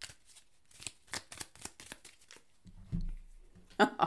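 A tarot deck being shuffled by hand: a run of light, irregular card snaps and flicks, with a brief low thump about three seconds in.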